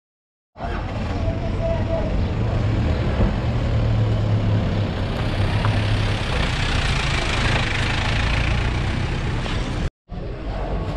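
Outdoor market ambience: vehicle engines running with a steady low rumble, under a background of people's voices, cutting in suddenly about half a second in.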